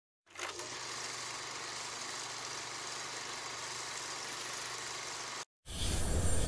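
Steady mechanical hum with hiss over it, even in level, cutting off suddenly near the end. Just before the end, louder music with a deep bass comes in.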